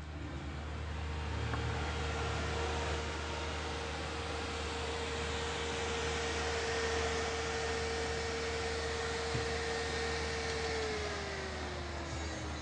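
A small car's engine running, growing louder over the first couple of seconds, with a steady hum. Near the end the hum slides down in pitch as the engine winds down.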